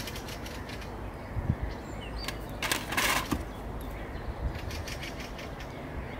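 Outdoor ambience with short bird chirps and a brief loud rustle about three seconds in, then a run of rapid ticks near the end.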